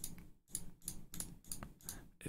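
A quick, irregular run of faint clicks from a computer mouse: about a dozen in two seconds.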